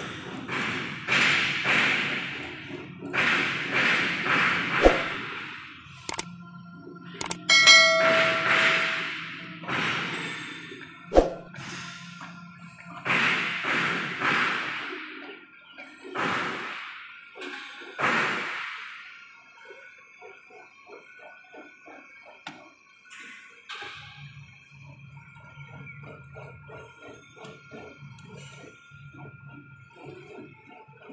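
A hand tool worked over the rubber surface of a conveyor belt to prepare the splice, in repeated rasping strokes that swell and fade about every second and a half, with two sharp metal knocks. The strokes stop after about twenty seconds, leaving a faint steady whine.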